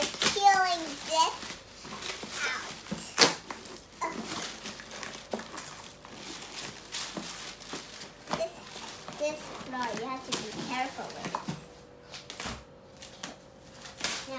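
Thin white packing wrapping rustling and crinkling as pieces are pulled from a cardboard box, with a sharp knock about three seconds in. A young girl's voice, without clear words, is heard at the start and again around ten seconds.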